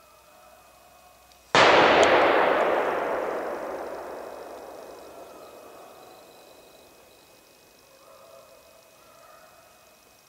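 A single close gunshot from a hunting rifle about one and a half seconds in, its report rolling on through the forest and dying away over about five seconds.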